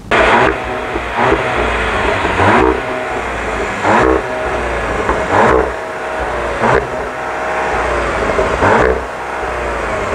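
Seat Leon Cupra's 2.0-litre four-cylinder turbo petrol engine running, heard from outside the car; the sound swells about every second and a half.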